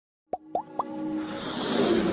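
Animated logo intro sound effect: three quick plops, each gliding up in pitch and a little higher than the last, then a whoosh that swells in loudness over a held musical note.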